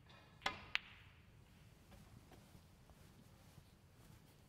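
Snooker cue tip striking the cue ball, then a sharp click as the cue ball hits the yellow about a third of a second later. Two quick clicks, then only faint ticks in a quiet hall.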